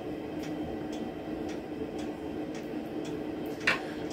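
Soft clicks from a tobacco pipe being puffed, over a steady low room hum, with one louder puff near the end.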